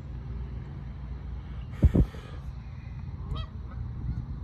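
Canada geese calling now and then over a steady low rumble, with a short rising call near the end. A loud double bump about two seconds in is the loudest sound.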